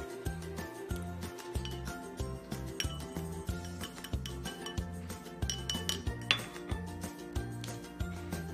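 Metal spoon stirring salt into water in a stemmed glass, clinking against the glass several times, the sharpest clink about six seconds in. Background music with a steady beat plays throughout.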